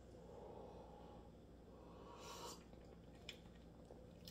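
Near silence: room tone while hot black coffee is sipped from a mug, with one faint short hiss a little after two seconds in and a tiny click later.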